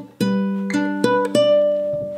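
Acoustic guitar played by hand: about four plucked notes in quick succession, the last high note ringing on. This is the G-chord part of a riff played with a long fretting-hand stretch up the neck.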